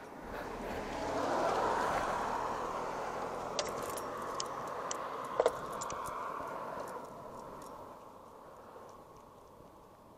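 A passing road vehicle: its engine and tyre noise swells over the first second or two, holds, then fades away over the last few seconds. A few light clicks, likely from gloved hands on the handlebar controls, fall near the middle.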